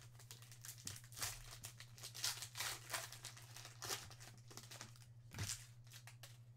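Trading card pack's foil wrapper crinkling and tearing as it is opened by hand, a faint run of short crackles, over a steady low hum.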